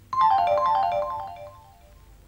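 A short electronic tune starts suddenly: a quick run of chime-like notes stepping downward, fading out after about a second and a half.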